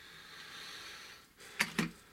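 Hard plastic toy dinosaur figure handled and set down on a tabletop: a soft hissy rustle, then two sharp plastic knocks close together near the end.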